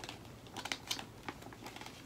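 Pages of a small paper pattern booklet being turned and handled: a few short, faint rustles and taps.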